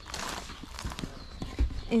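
Footsteps on a wooden deck and gravel while the phone is moved about: a series of uneven knocks over a rustling hiss, with a low bump from handling about one and a half seconds in.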